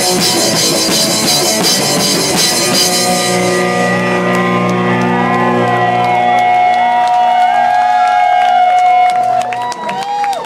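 Live rock band: drum kit and crashing cymbals play hard under guitars for about three seconds, then the drums stop. Electric guitar and bass notes are left ringing on, with sustained tones that bend in pitch, until they cut off near the end.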